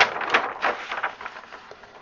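A large paper instruction sheet being turned over and folded flat: a crisp rustle of paper, loudest in the first second and then fading to a few faint touches.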